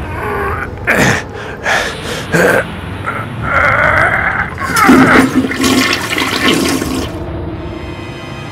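A toilet flushing: a rush of water that swells about three seconds in and dies away about seven seconds in.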